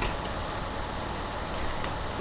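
A duct-tape lunchbox with a foil-pouch lining being opened and handled: one sharp click at the start, then a few faint ticks and rustles over a steady low webcam hum.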